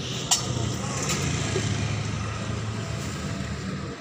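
A motor vehicle engine running close by, a steady low hum that swells and then eases off. A single sharp clink about a third of a second in, from a clay serabi pan lid being handled.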